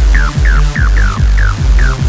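Fast hands-up/techno dance music: a heavy kick drum on every beat, with short falling synth notes repeating above it.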